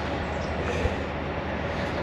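Steady outdoor background noise, a low rumble with an even hiss over it, with one small low thump a little under a second in.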